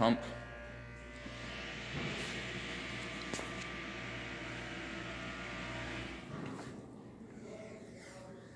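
Hydraulic elevator's pump motor running with a steady electric hum, joined by a rushing hiss from about a second and a half in; the whole sound cuts off about six seconds in as the pump shuts down.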